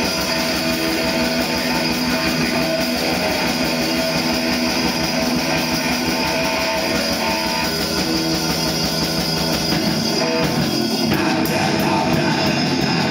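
Heavy metal band playing live: distorted electric guitar, bass guitar and drum kit, dense and continuous, with the deepest part of the sound thinning out about ten and a half seconds in.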